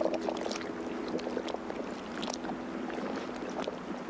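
The end of an ambient music track: a held low chord that thins out about halfway through, over a steady bed of lapping, splashing water with small clicks.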